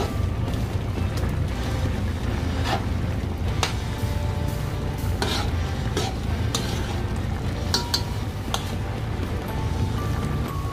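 A metal spoon stirring peanut butter into a thick meat stew in a cooking pot, with scattered clinks and scrapes of the spoon against the pot over a steady low rumble.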